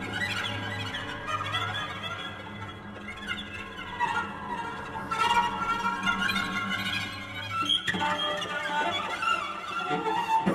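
Solo cello playing fast flurries of short notes high in its range, swelling and fading in loudness. A low held tone sounds underneath for about the first four seconds.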